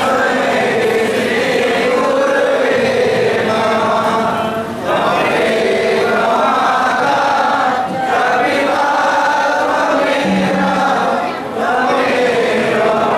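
A crowd of devotees singing an aarti hymn together in chorus, in long phrases with short breaks every three to four seconds.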